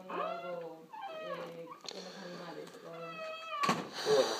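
A person's voice, faint and high-pitched, speaking with rising and falling pitch, away from the recording phone. A sharp bump near the end, louder than the voice.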